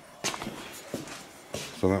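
A few light knocks and shuffling from handling a pre-cut metal angle piece and moving about, with the loudest knock about a quarter second in. A man starts speaking near the end.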